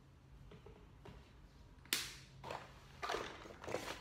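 A trigger spray bottle of cleaner being sprayed in several short hissing bursts about half a second apart, the first and sharpest about two seconds in.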